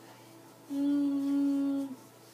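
A person humming one steady, level note for about a second, starting partway in and stopping just before the end.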